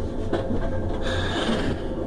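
Steady low rumble inside a passenger train's sleeper compartment, with light rubbing and scraping from a handheld camera being moved about.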